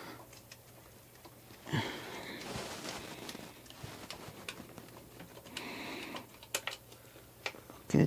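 Scattered light metallic clicks and knocks as a loosened power steering pump is worked free from its engine mounting bracket by hand.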